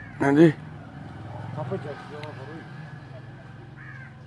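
A man's short spoken reply, then faint voices of people talking over a low, steady hum.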